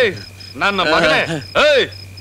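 Crickets chirping in a steady, evenly pulsed rhythm of about three to four chirps a second. Over them come two loud vocal outbursts from a person, without clear words.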